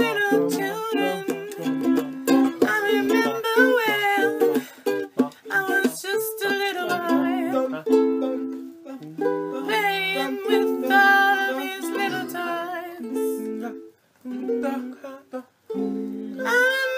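Ukulele strumming chords, with a wavering melody line over them. The playing breaks off briefly twice near the end.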